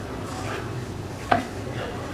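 Kitchen knife cutting rolled maida dough on a wooden chopping board, with soft cutting strokes and one sharp knock of the blade on the board a little past halfway.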